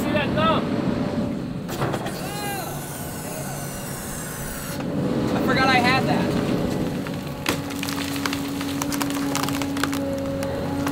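Volvo excavator running as its bucket and hydraulic thumb push over and break up a tree, the wood cracking and splintering. Three bursts of creaking squeals come and go, and a steady whine sets in about seven and a half seconds in.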